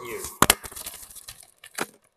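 Chocolate packaging being opened by hand: two sharp snaps about half a second in, then small crinkles and ticks, and another sharp click near the end.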